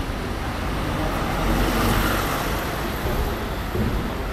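City street traffic: motor vehicle engine and tyre noise that swells to its loudest about halfway through and then eases, with a city bus turning into the street.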